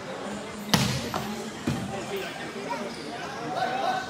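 A volleyball struck three times in quick succession during a rally, sharp slaps about a second in, the first the loudest, over background voices.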